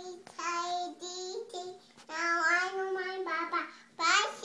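A toddler girl singing wordless held notes in short phrases, the longest starting about two seconds in.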